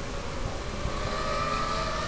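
Small electric quadcopter motors and propellers whining, a steady pitched tone that rises slightly in pitch through the second half, over a low rumbling noise.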